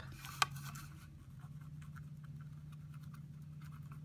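Faint scratching and small taps of a brush-tip marker being worked over a rubber stamp to ink it, with one sharper tick about half a second in. A steady low hum runs underneath.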